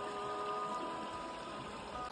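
Faint, steady rush of flowing creek water.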